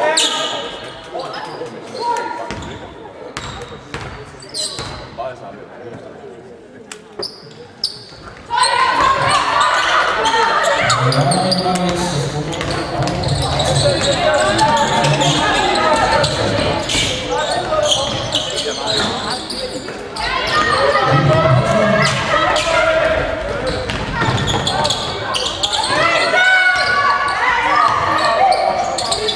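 Women's basketball game in a sports hall: a ball bouncing on the wooden court with scattered short knocks in the first eight seconds or so. About eight seconds in, loud overlapping voices of players and spectators suddenly come in and carry on, echoing in the hall.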